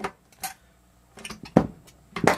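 A few short metallic clicks and clinks of a hand tool and fingers working on the input jack hardware inside an amplifier chassis, the loudest about one and a half seconds in.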